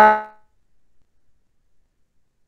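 A man's voice ending on a drawn-out syllable that fades out in the first half-second, then near silence.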